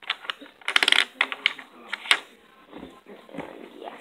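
Plastic board-game pieces clicking and clattering against a hard tabletop as they are handled: a quick rattle of clicks about a second in, then a few single knocks.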